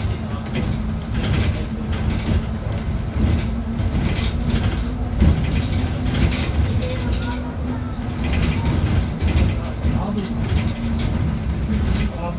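Inside a moving city bus: a steady low engine drone and road noise, with scattered rattles and knocks from the cabin.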